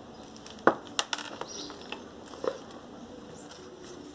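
Handling noise from a wooden-stick orchid planter: a few sharp clicks and knocks in the first half, the first the loudest, as it is shifted in gloved hands and set down on a tiled tabletop.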